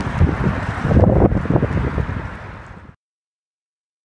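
Wind buffeting the microphone, with a few knocks and bumps of hand-held camera handling about a second in, fading out to silence about three seconds in.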